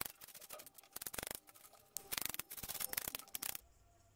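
Kitchen knife rapidly chopping red onion on a plastic cutting board: quick, uneven runs of sharp taps that stop about three and a half seconds in.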